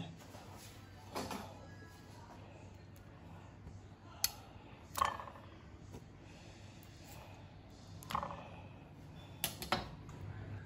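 A handful of light, sharp clicks of a fork and spatula against a ceramic plate as slices of tikoy are dipped and turned in beaten egg, over faint background music.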